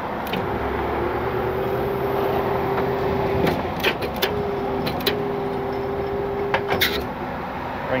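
Tow truck's PTO-driven hydraulics working the wheel lift as it is lowered: a steady whine over the running engine, stopping and starting as the control is worked, with a few sharp metal clicks and clanks about three and a half seconds in and again near the end.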